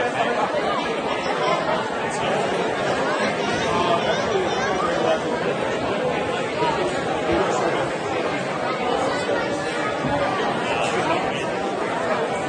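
Crowd chatter: many people talking over one another in a steady babble of voices.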